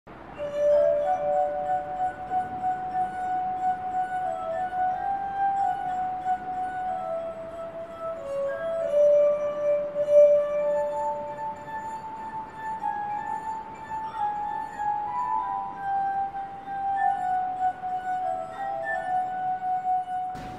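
Glass harp of water-tuned wine glasses played by rubbing fingertips around the rims: held, pure ringing tones that overlap two or three at a time and move through a slow melody.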